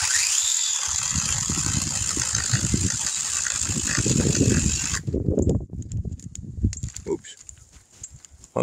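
Battery-powered Seesii PS610 pole saw's brushless motor and 6-inch chain spinning up with a short rising whine and cutting through a roughly inch-and-a-half dead pecan limb. The saw stops suddenly about five seconds in. A couple of seconds of irregular rustling and knocking follow.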